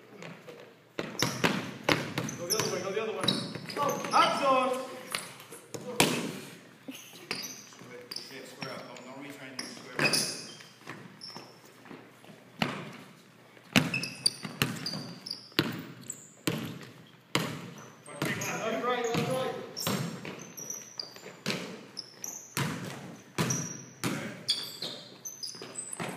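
Basketball dribbled and bounced on a hardwood gym floor, irregular sharp knocks through a pickup game, echoing in the hall, with players' voices calling out at times.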